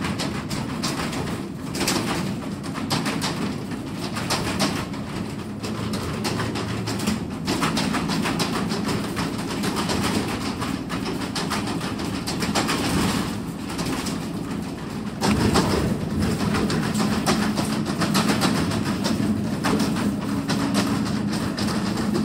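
Steady rumble and rattling of a truck's enclosed cargo box, heard from inside the box, growing louder about fifteen seconds in.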